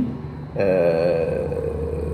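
A man's drawn-out hesitation sound, a held 'eh', starting about half a second in and lasting about a second and a half, its pitch sinking slightly.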